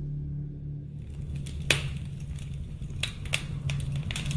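A low steady hum with a few scattered sharp clicks: the loudest comes about a second and a half in, and three more follow near the end.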